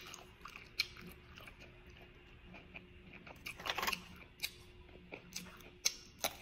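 Close-up chewing and mouth sounds of a person eating, with scattered sharp clicks and a louder cluster of them a little before four seconds in.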